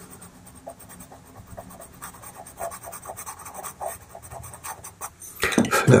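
White pastel pencil scratching lightly on pastel paper in a series of short strokes, touching in a white marking.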